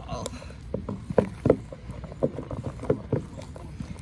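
A small spatula stirring thick, foamy shaving-cream-and-glue puffy paint in a red plastic bowl, giving irregular soft knocks, about two or three a second, as it hits the bowl.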